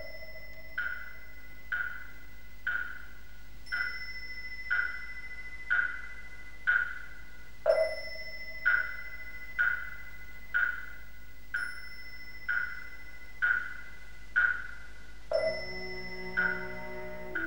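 Slow, even wooden-block knocks, about one a second, with a deeper, longer-ringing strike every eighth beat, over a faint steady high tone, in the manner of Buddhist temple percussion.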